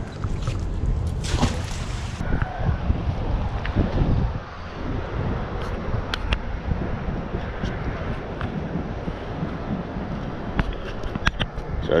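Wind rumbling on the chest-mounted camera's microphone, with a short splash about a second and a half in as a rope-tied fishing magnet is thrown into the water. Scattered small clicks and rustles follow as the rope is handled.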